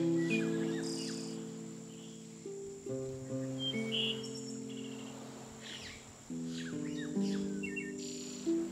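Harp chords plucked about every three seconds and left to ring and fade, with small birds chirping and trilling high above the music.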